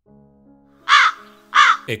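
A crow cawing twice, loud and less than a second apart, over a soft held music chord.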